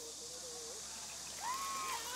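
Water tipped from hard hats splashing over people's heads, over a steady hiss of outdoor ambience. In the second half a man gives two drawn-out cries.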